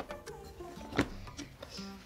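Quiet background music with a steady run of notes, and a single light knock about a second in as a stack of books is set down on wooden dowels on a table.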